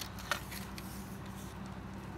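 Faint handling noise of hands shifting a fishing rod, with a couple of soft clicks in the first second, over a steady low hum.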